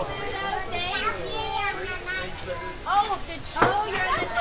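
Excited voices of a small group, high child-like voices among them, chattering and babbling without clear words, with two short louder exclamations near the end.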